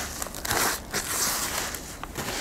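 A gloved hand scooping and rubbing crumbly potting mix in a plastic tray: a few crunchy, rustling strokes, the loudest about half a second in.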